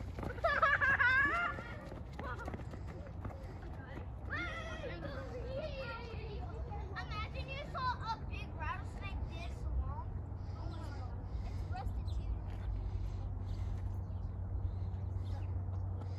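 Children shouting and calling out as they run off. One louder shout comes in the first two seconds, then fainter scattered calls as they get farther away, over a steady low rumble.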